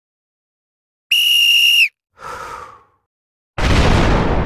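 Outro sound effects after silence: a steady, high whistle blast lasting under a second, then a fainter falling tone. About half a second before the end comes a loud hit that dies away slowly.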